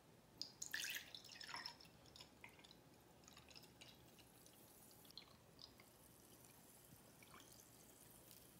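Diet Coke poured from a bottle into a tall glass, loudest as the soda first splashes in about half a second in, then a quieter pour with scattered fizzing ticks as the glass fills. Faint overall.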